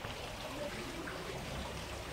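Low, steady background hiss of the room and recording in a pause between spoken phrases, with no distinct sound event.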